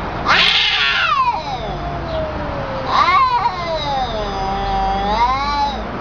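Cats caterwauling in a face-off: two long, drawn-out yowls, the first harsh at its start and sliding down in pitch, the second wavering and rising again near its end. This is the threatening yowl that cats use in a territorial standoff before a fight.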